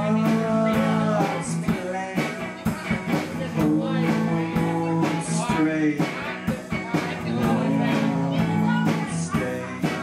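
Live band playing a blues-rock song: guitar and drums with a sung vocal line, heard in a room.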